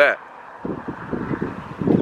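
Wind buffeting the camera's built-in microphone: an uneven low rumble that picks up about half a second in.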